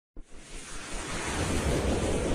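Rushing noise swell with a low rumble, starting suddenly and growing louder: a whoosh sound effect from an animated title intro.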